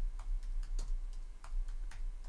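Typing on a computer keyboard: a quick string of separate key clicks, several a second, over a low steady hum.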